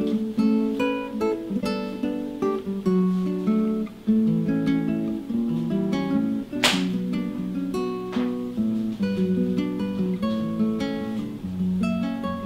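Background music: an acoustic guitar picking notes over chords, with one sharp strummed stroke a little past halfway.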